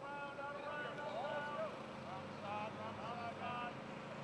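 Indistinct shouting from several football players on a practice field, in two stretches of drawn-out calls, over a steady faint hum.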